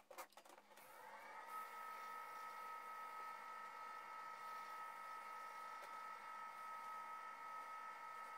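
Wood lathe started up: a few clicks, then the motor's whine rises over about a second and settles into a steady high-pitched running whine.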